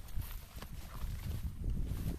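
Footsteps walking through tall grass, uneven thuds with the stems brushing against legs and the camera.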